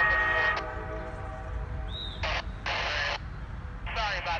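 A CSX SD40-3 locomotive's horn sounds a steady multi-note chord that cuts off about half a second in, over the low rumble of the slow-moving train. Later come a short chirp and two brief bursts of hiss.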